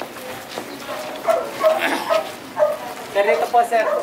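Indistinct voices of people talking, louder and choppier from about a second in.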